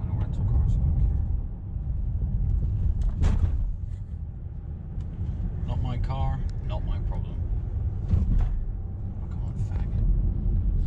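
Steady low road and engine rumble inside a moving car's cabin, with a few brief sharp noises about three and eight seconds in.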